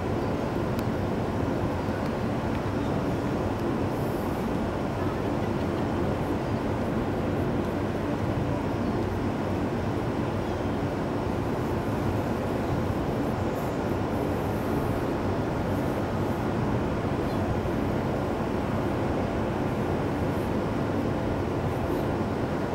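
Steady low rumble with a faint constant hum, typical of a cruise ship's engines and machinery heard from the open deck.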